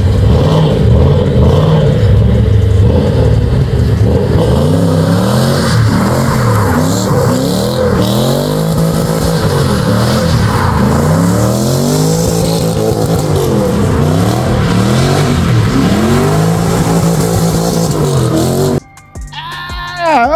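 Ford Mustang's engine revved hard again and again, the pitch climbing and falling in repeated sweeps, as it does a smoky burnout with the rear tires spinning. The sound cuts off suddenly about a second before the end.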